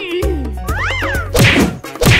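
Cartoon sound effects over background music: a whistle-like tone that slides up and back down, then a loud whack near the end as the paper bird crashes into the pipe.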